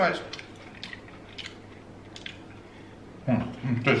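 Faint eating sounds, chewing and sipping through a straw, with a few soft mouth clicks in the lull between bits of speech.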